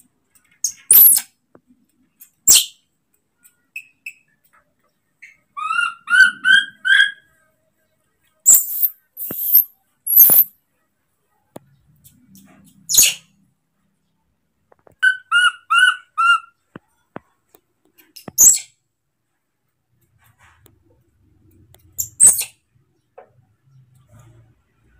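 Baby macaque calling loudly for its keeper: short shrill screeches at intervals, and twice a run of four or five quick rising chirps.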